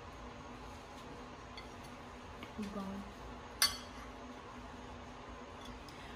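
A single sharp clink of a metal fork against a plate a little past halfway, with a couple of fainter taps before it, over quiet kitchen room tone. A short hum of a voice comes just before the clink.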